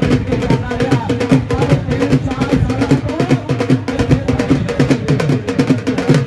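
Dhol drum beaten in a fast, even rhythm over a steady held drone, with some voices mixed in.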